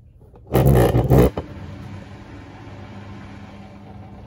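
Samsung WW90J5456FW front-loading washing machine mid-cycle. About half a second in there is a loud rushing burst lasting under a second, then the machine settles into a steady hum with a hiss.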